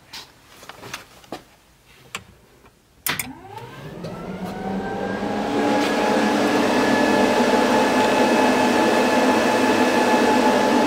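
A few light clicks, then about three seconds in the electric cooling fans and electric water pump switch on together. They spin up over a couple of seconds to a steady whir, with the engine off. This is the ECU's latched cool-down mode, switched on by the trans brake button.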